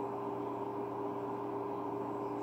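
Room tone: a steady low electrical or appliance hum over a faint even hiss, with no other sound.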